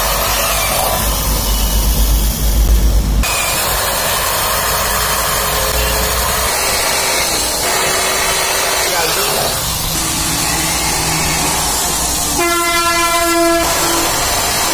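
Electric drill running as it drills and drives screws into an aluminium window frame, a loud, steady mechanical noise. A deeper part cuts off abruptly about three seconds in, and a steady whine with overtones sounds for about a second near the end.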